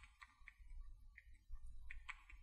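Near silence over a low hum, with a few faint, short clicks scattered through it.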